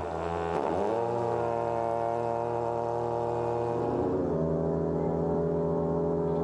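Tibetan long horns (dungchen) blown by monks: a low, steady drone that bends in pitch about half a second in and moves to a different note about four seconds in.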